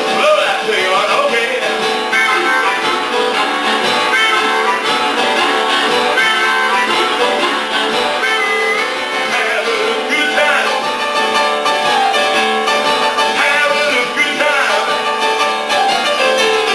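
Harmonica played over a keyboard accompaniment, with notes that bend up and down above the steady chords.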